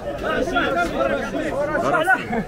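Several people talking at once, their voices overlapping in a steady chatter.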